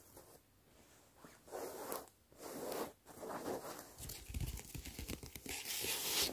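Close-up ASMR scratching and tapping on plastic LED finger lights: several scratchy strokes of about half a second each, then denser scratching with quick clicks and soft low thumps in the second half, loudest near the end.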